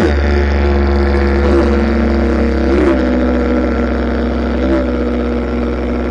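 Didgeridoo played without a pause, using circular breathing to hold one continuous low drone. The overtones above it swoop briefly a few times as the player shapes the sound with his mouth and voice.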